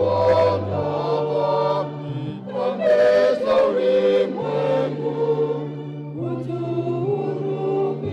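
Church choir singing a hymn in sung phrases, over low bass notes held and changed in steps by an accompanying instrument.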